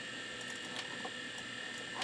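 Steady electrical hum and hiss of running computer equipment, with a couple of faint clicks about the middle.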